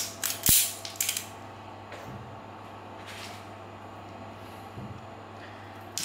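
A spring-loaded metal automatic wire stripper being handled and worked, its jaws and pivots clicking and creaking. A quick cluster of sharp clicks comes in the first second, then a few softer clicks, over a low steady hum.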